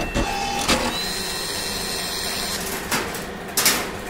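Cartoon sound effects of an industrial robot arm at work: a couple of clanks, a steady whirring motor for about a second and a half, then two short bursts of hiss.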